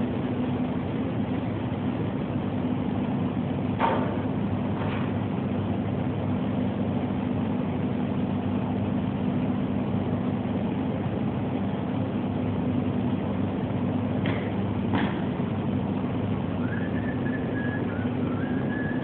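Steady machinery hum with a low steady tone, with a few light metallic clanks from a worker's boots and hands on a caged steel ladder as he climbs down it.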